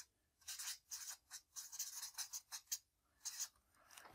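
Felt-tip marker writing on flipchart paper: a run of short, faint strokes as the words are written out.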